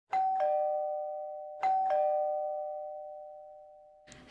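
Two-tone ding-dong doorbell chime sounding twice, about a second and a half apart: a higher note then a lower one, each ringing on and fading slowly.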